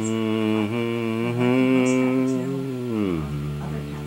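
A man's voice drawing out one long, steady hummed note, not words. It glides down to a lower note about three seconds in and holds there.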